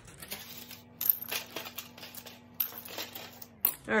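Broken bottle glass clinking as shards are dropped and shifted by hand in a rock tumbler barrel: several sharp, separate clinks.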